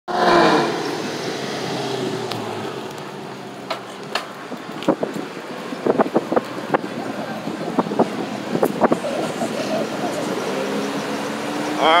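Street traffic with car engines running, a scatter of sharp clicks through the middle, and a car engine's steady note growing louder over the last few seconds as a 2006 Pontiac GTO with its 6.0-litre V8 comes up alongside.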